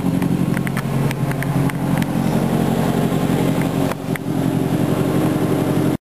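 Toyota Celica All-Trac's turbocharged 2.0-litre four-cylinder (3S-GTE) idling steadily, with a short knock about four seconds in.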